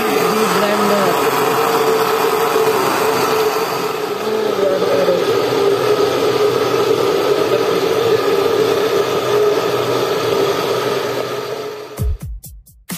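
Electric blender motor running steadily with a constant hum, fading out near the end.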